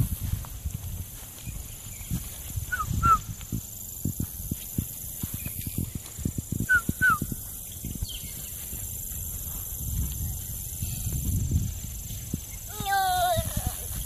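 Footsteps and rustling in grass, with a steady high drone underneath and two pairs of short high chirps. A toddler's brief wavering squeal comes near the end.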